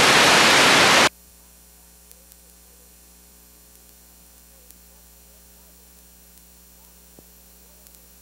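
A loud burst of VHS tape static, an even hiss, lasting about a second and cutting off sharply. It is followed by a low steady mains hum from blank tape playback.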